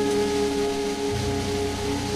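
Instrumental jazz: a band holds several sustained notes together, with the bass moving to a new note about a second in.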